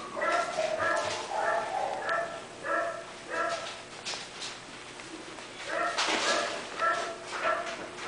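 A dog barking repeatedly, short yaps at about two a second, in two runs with a pause of about two seconds in the middle. There is a brief rustle as the second run starts.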